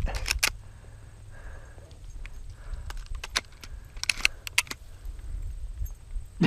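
Several short metallic jingles and clicks, some in quick clusters, over a low rumble of wind on the microphone while walking through tall grass.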